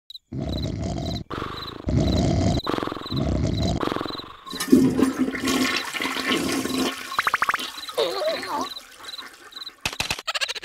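Water rushing and gushing down a sewer drain in three surges, over a steady, regular high chirping of crickets; about halfway through, a cartoon character's voice sounds, with wavering glides near the end.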